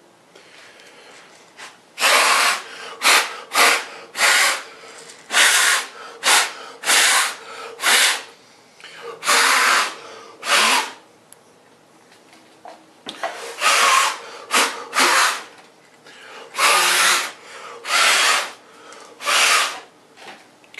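A person blowing hard, short puffs of breath onto a wet epoxy surface coat on a face mold: about eighteen puffs in two runs with a short pause between them.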